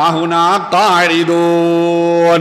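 A man's voice intoning Quranic Arabic in a chanted, melodic recitation style, with short gliding phrases followed by one long held note.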